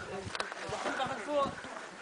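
Indistinct voices talking in short snatches over a faint hiss, with one sharp click just under half a second in.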